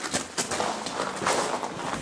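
Footsteps crunching on a gravel floor, irregular steps.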